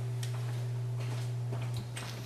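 Steady low electrical hum from a DJ turntable-and-mixer setup, with a few faint, irregularly spaced clicks.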